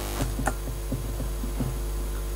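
Steady mains-frequency hum with a stack of overtones from a home-built vacuum-tube Tesla coil running off a rectified mains voltage doubler, just switched on. A couple of faint clicks come in the first half-second.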